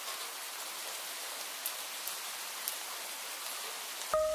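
Steady, rain-like hiss of falling water, with a few faint ticks scattered through it.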